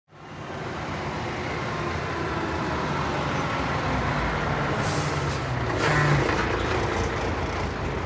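Heavy truck engine running steadily, with two short bursts of air-brake hiss about five and six seconds in.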